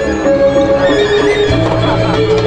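Balinese gong kebyar gamelan playing: bronze metallophones ringing in fast, steady figures, with a deep sustained note coming in sharply about three-quarters of the way through.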